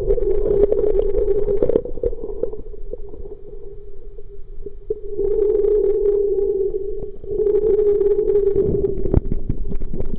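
Muffled underwater sound picked up through a waterproof camera: a steady droning hum that fades about two seconds in and swells back about five seconds in, with scattered clicks and pops.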